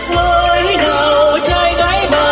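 Loud live music over a PA: a Vietnamese song with a wavering, gliding sung melody over band accompaniment.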